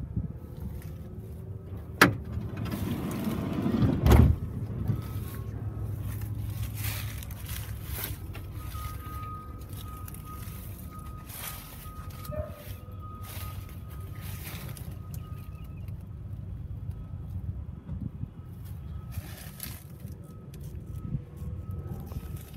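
A click about two seconds in, then a van door shut with a loud thump about four seconds in, followed by footsteps and handling knocks over a steady low rumble.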